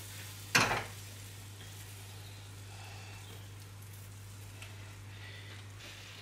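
Hot toffee sauce sizzling faintly and steadily on a just-baked sticky toffee pudding, over a low steady hum. About half a second in, a single sharp clunk as a saucepan is set down on the hob.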